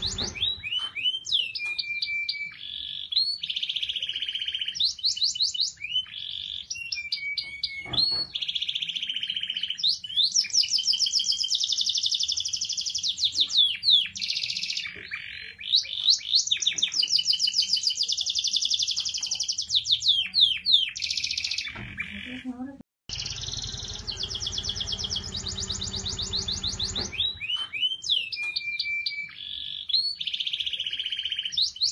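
Domestic canary singing a long, fast song of rapid trills and rolls, with a brief cut-out about two thirds through.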